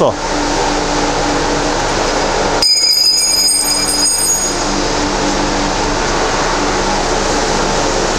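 Steady mechanical hum and hiss of workshop background noise. About three seconds in, the low hum briefly drops away under a high-pitched whine that lasts under two seconds.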